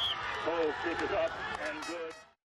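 Several people's voices talking and calling out over outdoor background noise at a football game, with a short high steady tone right at the start.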